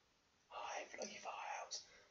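A man whispering a few indistinct words, starting about half a second in.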